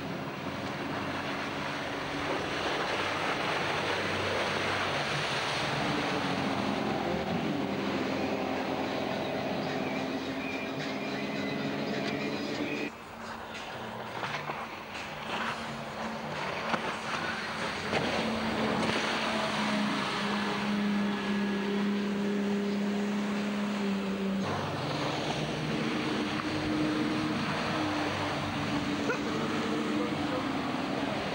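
Princess 266 Riviera powerboats' twin 4.3-litre V6 petrol engines running hard at speed, over the rush of water and wind. The engine note holds steady and then shifts in pitch several times, with a brief drop in level about halfway through.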